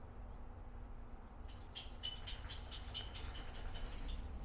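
Solder melting onto a connector pin under a soldering iron, with quick, faint crackles and pops of flux boiling off. They start about a second and a half in, over a low steady hum.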